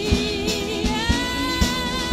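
Live band song: women singing over strummed acoustic guitar and a steady drum beat, about two strokes a second. A lower held vocal note gives way to a higher sustained note about a second in.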